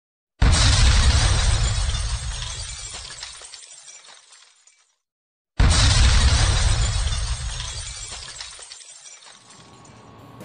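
An intro sound effect played twice, about five seconds apart: a sudden loud crash with a deep rumble that dies away slowly over about four seconds each time.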